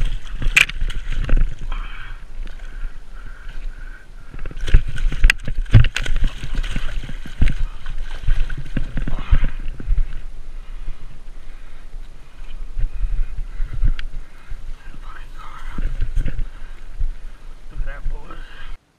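Large carp thrashing and splashing in shallow water at the bank while being dragged out by hand, in irregular fits, loudest around five to six seconds in and again near the end, over a steady deep rumble of handling and wind on the body-worn camera.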